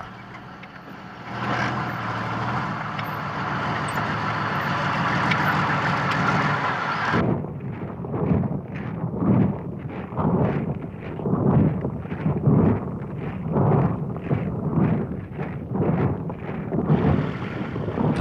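Tank engine and tracks running past, a dense steady noise that grows louder over the first several seconds and cuts off suddenly. Then comes a steady beat of boots marching in step, about two steps a second.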